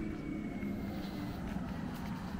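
A car driving past, a steady low hum of tyres and motor with a faint high whine that slowly falls in pitch.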